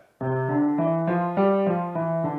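Acoustic grand piano starting to play a fraction of a second in: a line of changing notes over held low notes, with the low notes loudest. This is a touch exercise in hand dynamics, the left hand played loud and the right hand soft.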